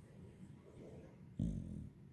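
A dog gives a short, low growl-like grumble, starting suddenly about one and a half seconds in and fading within half a second.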